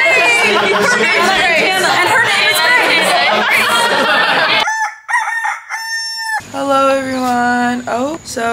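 A group of girls laughing hard and shrieking, many high voices sliding up and down at once. About five seconds in it thins to one high, thin squeal lasting under two seconds, followed by a lower drawn-out vocal note.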